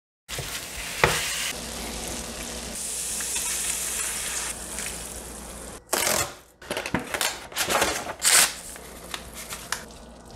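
Ground beef frying in a hot skillet, a steady sizzle with a single knock about a second in. About six seconds in the sound changes abruptly to the crackle of a cardboard box being torn open, followed by a run of short scrapes and rustles.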